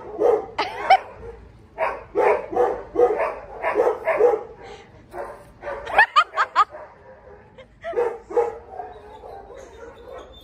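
Dogs barking in play, short barks in quick runs of about three a second, with a few high, rising yips about a second in and again about six seconds in.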